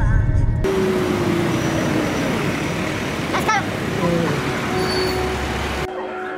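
Loud, steady rush of road traffic noise that starts abruptly under a second in and cuts off just before the end. A short chirping call sounds about three and a half seconds in.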